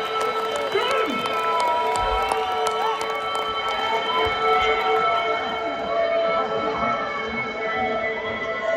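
Electric guitar amplifiers left ringing with sustained feedback, several steady tones held together, while a crowd cheers, whistles and claps at the end of a song. A couple of low thuds sound about two and four seconds in.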